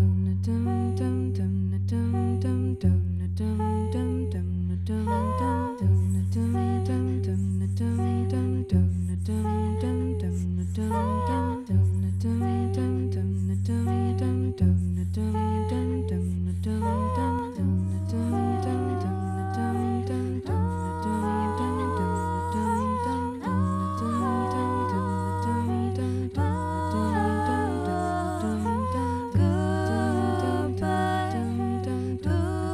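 Female a cappella vocal quartet singing without words, hummed and sung voices layered in harmony over a low repeating bass line that restarts about every three seconds. The upper voices grow busier and more active about halfway through.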